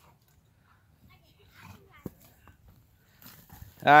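Two puppies, a husky and a larger white pup, wrestling in play: faint scuffling and soft dog noises with a sharp click about halfway. Near the end a person exclaims loudly.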